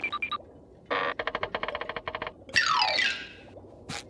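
Cartoon sound effects: a quick run of rapid pitched ticks lasting about a second and a half, then a falling, whistle-like glide.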